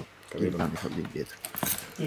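Quiet talking with a light metallic jingle, like keys jangling, in the second half.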